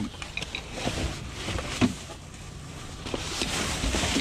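Trash in a dumpster rustling and clattering as a gloved hand digs through plastic bags, bottles and cardboard. There are scattered light knocks, a sharper knock about two seconds in, and denser rustling near the end.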